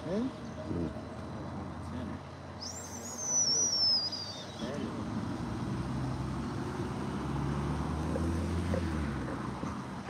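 A car driving past on the street, a low engine and tyre rumble that builds through the second half and fades near the end. Before it, a thin high whistle glides downward for about two seconds.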